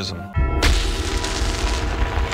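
A sudden deep boom hits about a third of a second in. Its low rumble carries on under background music: a dramatic sound effect in a documentary soundtrack.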